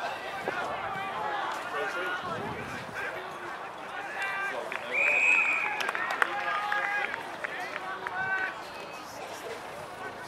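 Spectators shouting from the sideline of an Australian rules football match, several voices overlapping. About halfway through, a short, loud, steady blast of an umpire's whistle cuts through the voices.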